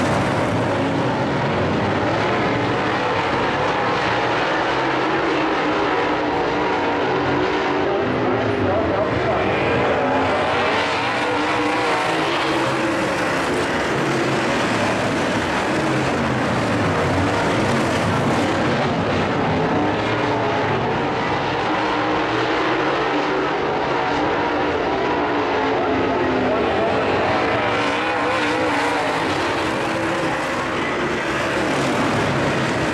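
A pack of dirt-track modified race cars racing, several V8 engines running at once and rising and falling in pitch as the cars rev through the turns and pass by.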